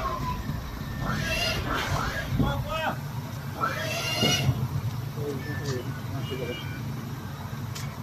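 Indistinct voices talking in short bursts, over a steady low mechanical hum that sets in about three seconds in.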